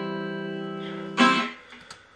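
Acoustic guitar chord ringing and slowly fading, then one last strum a little past a second in that dies away quickly.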